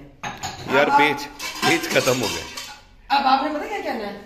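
Steel dishes, pots and cutlery clinking and clattering irregularly as they are washed by hand at a sink.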